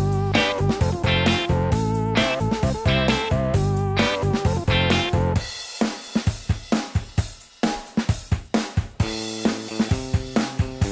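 Electric guitar chords strummed along with a backing track of drum kit, bass and a wavering pitched lead line. About five and a half seconds in, the bass and lead drop out, leaving drums and short, crisp chord hits. The fuller band comes back in about a second before the end.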